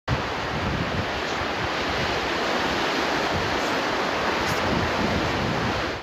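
Steady rushing of storm wind and sea waves, with irregular low buffeting of wind on the microphone.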